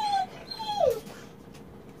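A dog whining, crying: two short high whines, each falling in pitch, within the first second.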